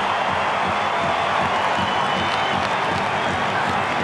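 Large stadium crowd cheering after a goal, a steady continuous din of many voices.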